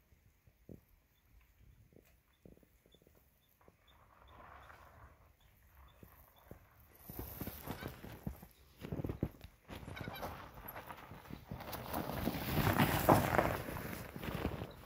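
Fat-bike tyres crunching over packed snow, growing steadily louder as the bike rides up and passes close by, loudest near the end.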